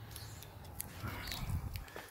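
Faint handling noise of a camera being moved about: light clicks and rustling, with a soft low rumble about one and a half seconds in.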